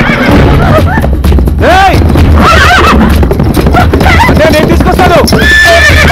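A horse whinnying several times in rising-and-falling calls, over a film soundtrack's background music.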